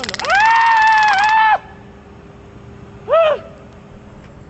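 A person's long, high-pitched 'ooooh', swooping up at the start and dropping off at the end. A second, short 'ooh' follows about three seconds in.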